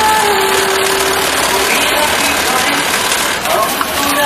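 Steady din of a garment-factory sewing floor: machines running, with indistinct voices mixed in.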